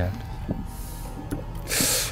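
Faint metallic clicks of pliers being worked on a fishing hook lodged deep in a finger, then a short, loud hissing intake of breath near the end.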